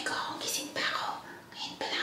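A woman whispering.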